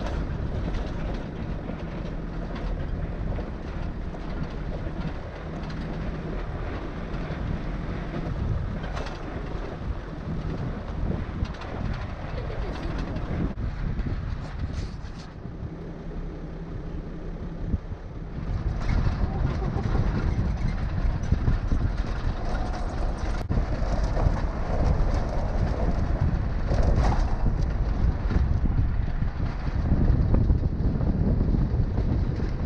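Safari vehicle driving across the crater floor: a steady engine hum and road rumble, joined about two-thirds of the way in by louder wind buffeting the microphone.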